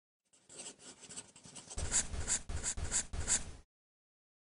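Pen scratching on paper in drawing strokes: light scratches at first, then about five louder quick strokes that cut off abruptly.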